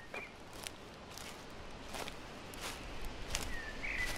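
Footsteps in dry fallen leaves, one crunch about every two-thirds of a second. A bird gives a short chirp at the start and again near the end.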